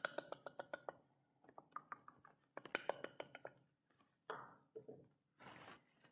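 Metal measuring cup tapped against the rim of a glass mixing bowl to knock the last of the flour out: three runs of quick, light taps, then a few soft rustles.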